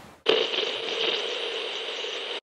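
Electronic logo-sting sound effect: a sudden hit about a quarter second in, followed by a steady held tone that does not change in pitch.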